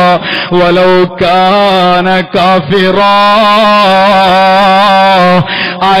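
A man's voice chanting a melodic religious recitation, drawn out in long notes, with a long held note wavering in pitch in the second half.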